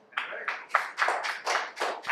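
A few people in the audience clapping, about four claps a second, starting just after the start and running on as the next speaker begins.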